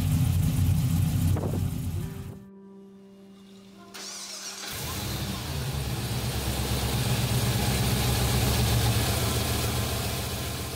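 An LS V8 engine idling, which drops away about two seconds in. After a short lull, a supercharged 6.2 L LSA V8 starts up about four to five seconds in and keeps running.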